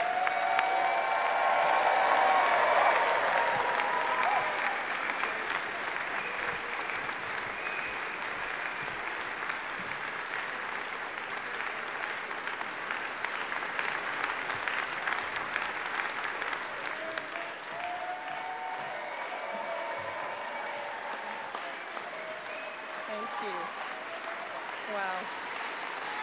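Large crowd applauding, loudest at first and easing off gradually, with a few voices calling out among the clapping.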